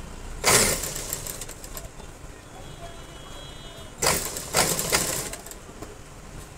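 Thin yellow kurta fabric rustling as it is handled and moved at a sewing machine, in two brief bursts: about half a second in and again about four seconds in.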